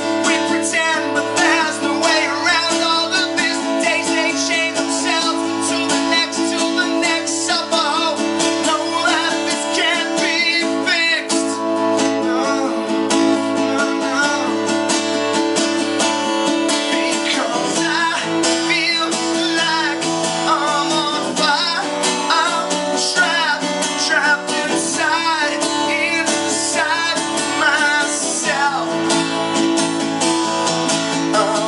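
Solo acoustic guitar strummed steadily in a live song, with a man's singing voice over it in places.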